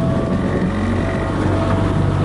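Small boat motor running at a steady pitch, with wind noise on the microphone.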